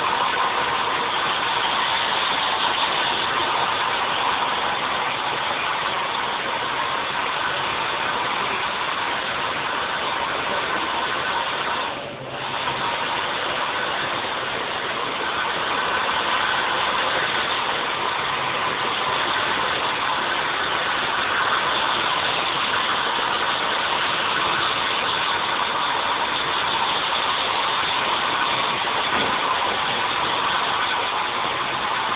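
Handheld hair dryer running steadily as hair is blow-dried, with a brief drop in level about twelve seconds in.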